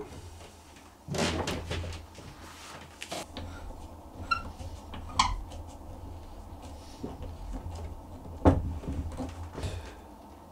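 Wooden screw clamps being handled and set against a glued-up hardwood board: scattered wood-on-wood knocks and clicks, with a couple of short squeaks midway and one sharp knock near the end that is the loudest.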